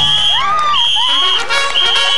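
A small group shouting and cheering with shrill, swooping cries as a group jump-rope attempt succeeds, over a held high-pitched tone that breaks off twice.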